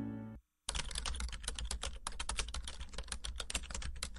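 Computer-keyboard typing sound effect: a rapid run of keystroke clicks, starting just under a second in and lasting about three and a half seconds, as on-screen title text types itself out. Before it the last note of a music bed cuts off.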